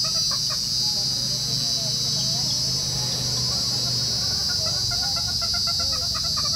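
Steady high-pitched buzzing of insects, with chickens clucking intermittently in the background.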